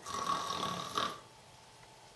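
A woman imitating a snore, one snore lasting about a second.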